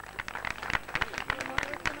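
People's voices and laughter, with many scattered short clicks and knocks, as a band waits to start playing.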